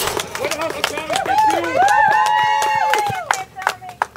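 Spectators shouting and cheering, with long drawn-out calls in the middle, over scattered sharp clicks; the voices fade near the end.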